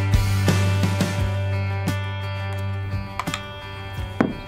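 Background music with strummed guitar over a steady bass, thinning out and quieter in the second half, with a few clicks near the end.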